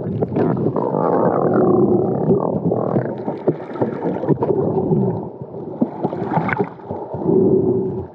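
Muffled underwater sound of water churning and bubbling around a swimming snorkeler, with scattered clicks and crackles and a few brief low hums.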